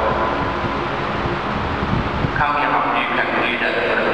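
A loud, steady low rumbling noise fills a pause in a man's talk, and from about halfway through a man speaks again into a microphone over it.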